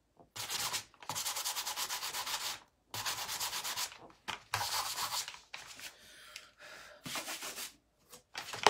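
Hand sanding of a painted craft piece with the 320-grit side of a sanding block: quick back-and-forth rasping strokes in about six runs with short pauses between, smoothing off messy stenciled paint.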